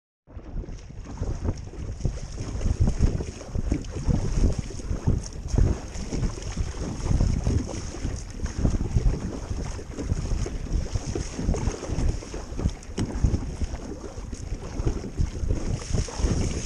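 Strong wind buffeting the microphone in uneven gusts, over choppy lake water splashing against a kayak as it is paddled.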